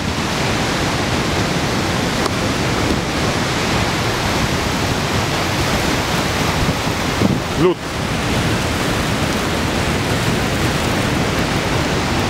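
Steady roar of the Skógafoss waterfall, mixed with wind noise on the microphone.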